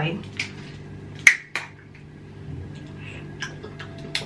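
Screw cap of a small juice bottle being twisted open: one sharp click about a second in, then a softer click, over a faint steady room hum.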